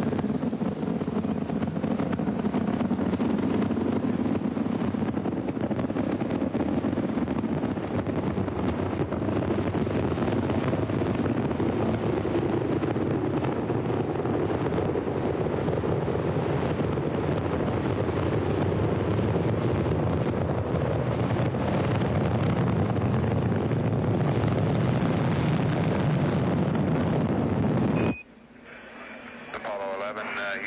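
Steady, loud rushing noise of the command module's reentry through the atmosphere, laid over the film of the glowing window; it cuts off suddenly near the end, followed by a short high beep.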